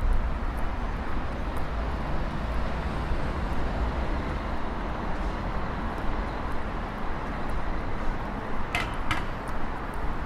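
Steady hum of road traffic on a city street, with a low rumble underneath. Near the end come two short, sharp, high-pitched sounds in quick succession.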